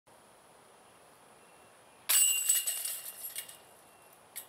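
Chains of a disc golf basket struck by a disc about two seconds in: a sudden metallic jangle of chains that rings and rattles away over about a second and a half.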